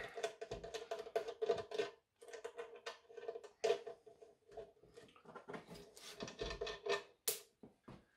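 Quiet background music with long held notes, over light clicks and taps from cable ends being fastened to battery and inverter terminals.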